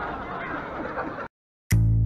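Crowd babble and street noise that cut off abruptly a little over a second in. After a short silence, edited-in music starts near the end, with deep, punchy bass notes and sharp clicks.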